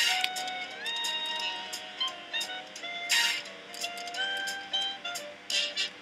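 Online slot game's electronic music playing through free spins, with many short clicks and a brief swish near the start and again about three seconds in as the reels spin and stop.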